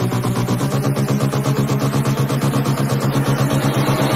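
Progressive house / melodic techno in a breakdown: sustained, buzzy synth chords pulsing in a fast, even rhythm, with no kick drum or deep bass.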